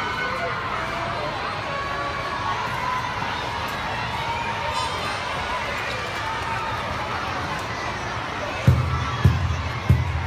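A hubbub of many children talking at once. Near the end, three deep drum beats about half a second apart.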